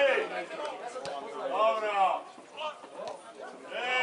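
Men's voices calling out, the loudest call about a second and a half in, with a quieter lull near the end.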